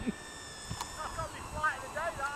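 Electric motor of a radio-controlled A-10 model plane flying overhead, a thin high whine that drops a little in pitch just over a second in.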